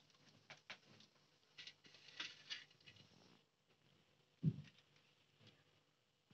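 Near silence with a few faint, light ticks and taps scattered through, and one soft low thump about four and a half seconds in.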